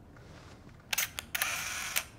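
Canon EOS digital SLR camera shutter firing: a quick double click about a second in, a single click just after, then a rapid run of shutter clicks lasting about half a second near the end.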